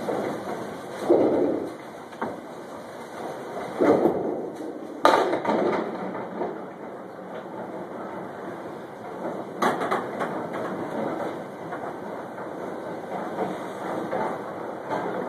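Candlepin bowling alley din: a steady rumble of balls rolling on wooden lanes, broken by sharp knocks of balls and pins about a second in, near four and five seconds, and near ten seconds, the one near five seconds the sharpest.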